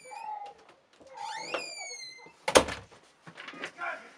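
Wooden door hinge creaking in long, drawn-out squeaks as the door swings open. A single loud thump follows about two and a half seconds in, with small knocks and clicks around it.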